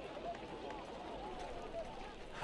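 Faint, indistinct voices over low background noise.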